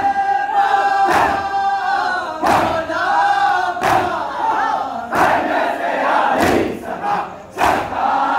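A crowd of male mourners performing matam: chest-striking in unison on a steady beat a little slower than once a second, over a chanted nauha (Muharram lament) sung by male voices.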